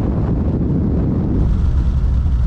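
A car driving along a road: a steady, loud low rumble of road and wind noise, with wind buffeting the microphone. About one and a half seconds in the sound changes abruptly.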